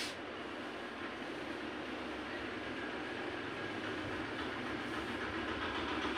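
Soft cotton saree fabric rustling and brushing as it is handled and unfolded, a steady rustle that grows slowly louder, with a short click at the start.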